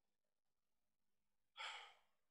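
Near silence, then near the end a single short breath, a sigh or sharp intake, into a handheld microphone.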